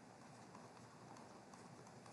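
Near silence with faint, irregular taps and scratches of a stylus writing on a tablet, over low hiss.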